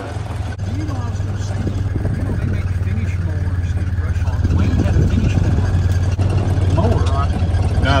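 Engine of a Honda 700 cc side-by-side utility vehicle running under way as it is driven, a steady low drone that gets a little louder about halfway through.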